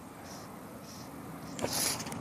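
Outdoor background hiss beside a small stream, with faint insect chirps repeating about twice a second. Near the end a brief louder swish, starting with a click, as fly line is cast.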